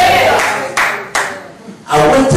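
A man's singing voice trails off, then a few sharp hand claps follow in quick succession.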